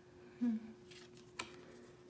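Tarot cards being handled: a faint papery sliding and a sharp click about a second and a half in as the top card is moved off the pile. A short hummed 'mm' from the person comes about half a second in.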